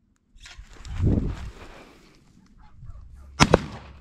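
Two gunshots fired in quick succession at a launched pigeon, a miss, near the end, after a muffled rush of sound about a second in.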